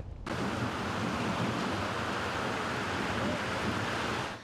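Steady rush of breaking surf and wind, starting abruptly just after the start.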